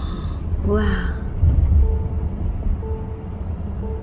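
Low, steady rumble of a car's road and engine noise heard from inside the cabin while driving.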